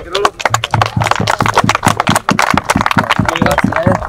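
Applause from a small group: steady hand claps, about five a second, after a badge has been handed over.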